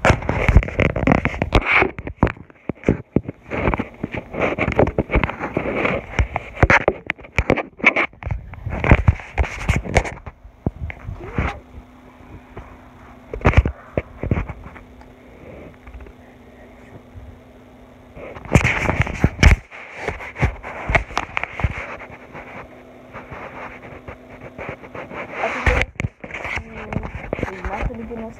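Muffled, indistinct voices mixed with loud knocks, rubbing and clicks from a phone being handled close to its microphone. A faint steady low hum comes in about ten seconds in.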